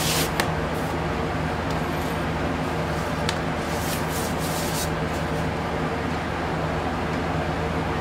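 Electric fans running with a steady hum and whoosh, over which a paper inner sleeve rustles in several short bursts as a vinyl record is slid out of it.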